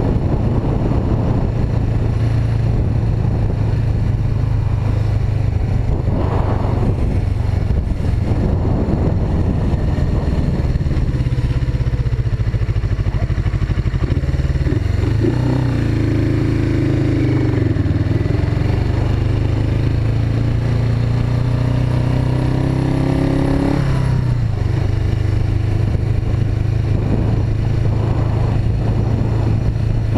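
Suzuki GS500E motorcycle's air-cooled parallel-twin engine running while riding along a street. The engine note drops and holds steady for several seconds around the middle, then picks up again.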